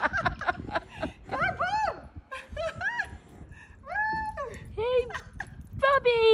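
Excited, high-pitched voices exclaiming and laughing in short wordless bursts.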